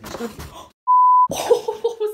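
A single censor bleep: one pure, steady, loud beep of about half a second, with the room sound cut out just before it. A sharp gasp comes before it and a voice after it.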